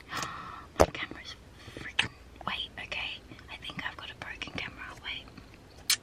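Handling noise from a handheld camera held close: sharp knocks and clicks as fingers work at its lens, which is sticking and not opening and closing, with quiet whispered muttering. The loudest knocks come about a second in and just before the end.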